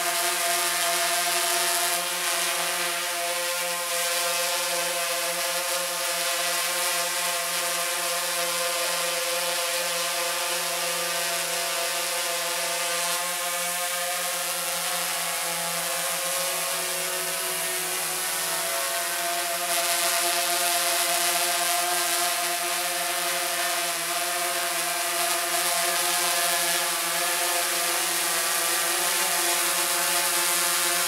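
DJI Phantom 3 Advanced quadcopter's propellers whining steadily overhead, a stack of several tones that shift slightly in pitch as it climbs and comes back down. The noise is a little stronger than usual because the drone is carrying the weight of a flashlight fitted to it.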